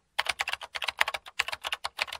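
A rapid run of computer-keyboard typing clicks, used as a sound effect: many quick, irregular keystrokes in a row.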